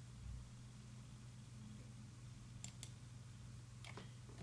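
Near silence over a low steady hum, broken by two faint mouse clicks in quick succession a little before the end.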